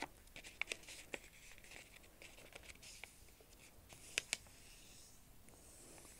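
Square of origami paper being folded by hand on a tabletop, the creases pressed flat: faint rustling and small taps, with two sharper clicks close together about four seconds in.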